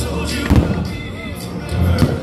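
An aerial firework shell bursting with one sharp bang about half a second in, with fainter crackles after it, over music with a heavy bass.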